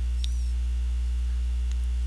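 Steady electrical mains hum: a constant low buzz with a row of overtones above it, unchanging in level.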